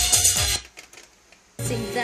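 Music playing from a cassette on an Aiwa hi-fi system through its speakers: one song cuts off about half a second in, a pause of about a second follows, and a different song starts near the end.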